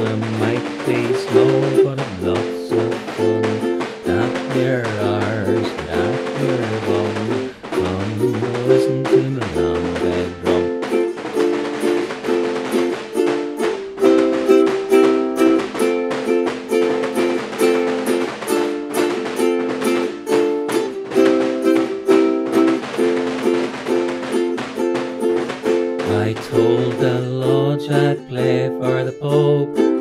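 Instrumental break on ukulele, chords and melody, with a Lambeg drum beaten in a fast, continuous rhythm of sharp strokes underneath.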